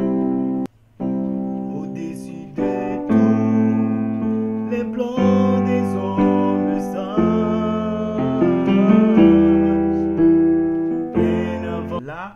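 Yamaha portable keyboard playing sustained chords in C major, the chord changing every second or two, with a short break in the sound about a second in.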